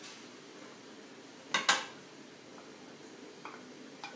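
Two quick metallic clanks close together about a second and a half in, as a tin can and a can opener are handled; otherwise only faint room noise.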